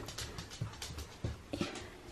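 A few faint, scattered light knocks and taps, with no steady machine sound.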